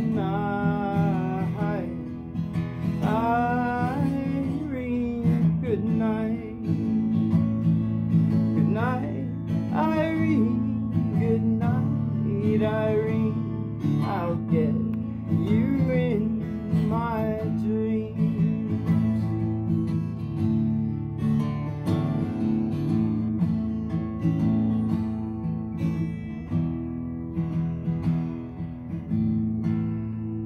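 Twelve-string acoustic guitar strummed, with a man's wordless singing over it through the first half; the playing dies away near the end.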